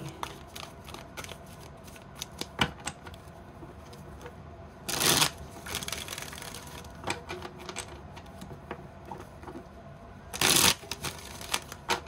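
A deck of tarot cards being handled and shuffled by hand: scattered light taps and rustles, with two louder, brief riffling bursts, one about five seconds in and one near the end.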